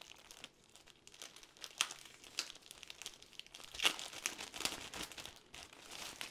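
Clear plastic bag crinkling around a rolled diamond-painting canvas as it is handled, in irregular crackles, the loudest about four seconds in.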